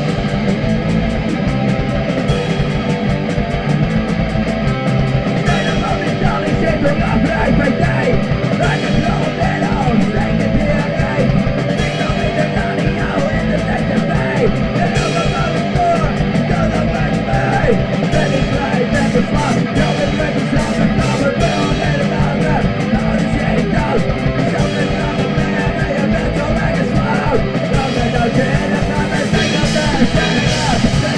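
Hardcore punk song: distorted electric guitar and a fast, steady drum beat playing without a break.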